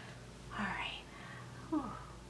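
A woman's soft breathy vocal sound about half a second in, then a brief falling hum near the end, made under her breath without words.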